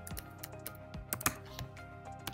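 Computer keyboard keys clicking in a quick, irregular run as a short word is typed, over steady background music.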